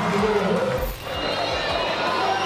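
Stadium crowd cheering and singing just after a shoot-out goal, with a brief drop in level about a second in.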